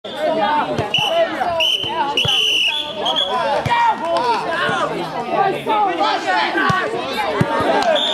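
Many girls' voices calling and chattering at once during a ball game, with several short thuds of a ball bouncing and being caught. A few high, shrill held calls cut through in the first three seconds.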